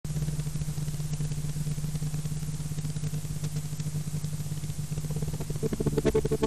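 Steady low hum with tape hiss from the noisy lead-in of a VHS tape being played back. A louder rhythmic sound comes in near the end.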